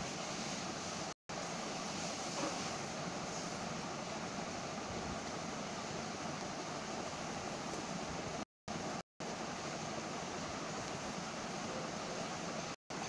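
Steady background hiss of recording noise with no speech, cut by short gaps of dead silence about a second in and twice around eight and a half to nine seconds.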